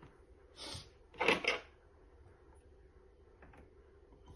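Hand handling at the needle of an embroidery machine while it is threaded: a soft rustle about half a second in, then two louder, quick scrapes just after a second, over a faint steady hum.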